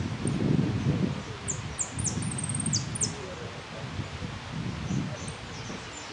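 Caged saffron finch (Argentine jilguero) singing a short phrase of high, thin notes, a few quick downward sweeps and a rapid trill, about a second and a half in, with a few faint notes near the end. A low, uneven background rumble runs underneath.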